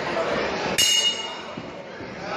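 Boxing ring bell struck once, ringing briefly, the signal for the round to begin, over crowd chatter in a hall.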